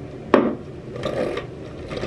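A single sharp click from a small cosmetic product being handled, about a third of a second in, followed by soft rubbing and rustling.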